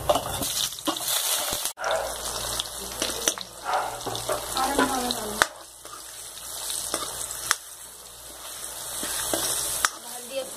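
Cumin seeds and raw mango pieces sizzling in hot oil in a kadhai, stirred with a steel ladle that clicks against the pan a few times.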